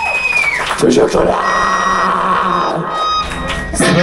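Electric guitars' last held, ringing note at the end of a thrash metal song, cutting off about half a second in, followed by shouting voices in the room.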